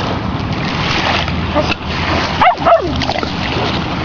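Small waves washing onto a pebble shore with steady wind noise on the microphone; about two and a half seconds in, a Shetland sheepdog gives a brief falling whine.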